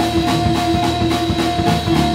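A small jazz combo playing: a saxophone holds one long note for almost two seconds over drum kit cymbal ticks, a walking upright bass and keyboard.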